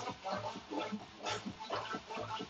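DJ mix from a DJ controller over PA speakers: a steady, fast bass beat with short, sharp cut-up sounds laid over it.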